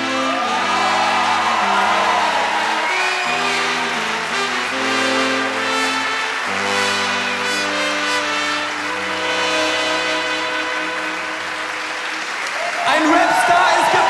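Live band holding the closing chords of a song, changing every second or two, while a concert audience cheers and applauds. The crowd noise swells louder near the end.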